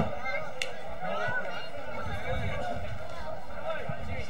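Many distant voices calling and shouting across an open football ground, overlapping without clear words, with a low rumble underneath.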